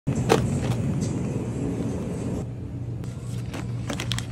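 A steady low rumbling hum with a few sharp clicks and taps of plastic food packaging being handled; the loudest click comes just after the start, with more near the end.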